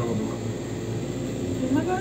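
Steady low hum of the air conditioning inside an enclosed Ferris wheel gondola, with faint voices near the end.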